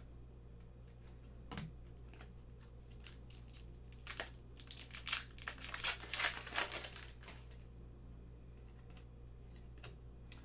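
A hockey card pack torn open and its foil wrapper crinkled, a run of crackling from about four seconds in to about seven seconds. A single light knock comes about a second and a half in.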